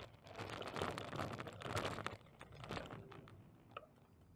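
Bicycle rolling over rough pavement, rattling and crunching for about three seconds, then easing to faint ticks near the end.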